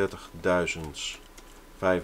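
Rapid clicking as numbers are entered into a computer calculator emulator, interspersed with a man's brief muttering.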